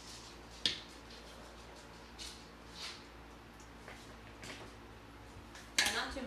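Faint, scattered shakes and rustles of dried seasonings being sprinkled into a blender jar, with a sharper clack near the end. Under it there is a low, steady kitchen hum.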